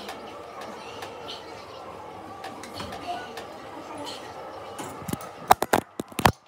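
Steady gym background with faint voices, then near the end a quick run of loud knocks and bumps as the phone is picked up and handled against its microphone.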